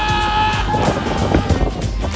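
Background music with a held note that fades out about a second in, over a steady low rumble.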